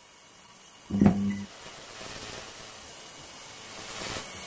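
Neon-sign sound effect for a logo animation: a short electric buzz about a second in, over a steady hiss that slowly grows louder.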